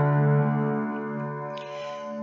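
Background piano music: a held chord that slowly fades.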